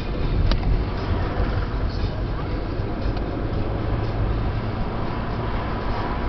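Engine and road noise heard inside a moving car's cabin: a steady low rumble, with a short click about half a second in.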